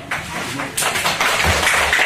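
Audience clapping, starting a little under a second in and carrying on as many overlapping claps, with a low thump near the end.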